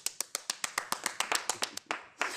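Two people clapping their hands in applause at a quick, even pace, about nine claps a second in all. The clapping stops near the end.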